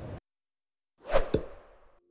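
A whoosh sound effect for a logo animation, coming in suddenly about a second in after a moment of dead silence, with a falling low tone and a sharp click near its peak, then fading away.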